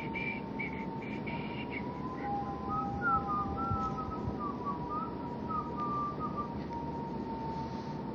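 A faint wavering whistle that rises and falls in pitch through the middle few seconds, over a steady high-pitched whine and background hiss.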